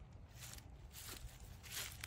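Faint soft rustles of footsteps in dry grass, the louder one near the end, over a steady low rumble.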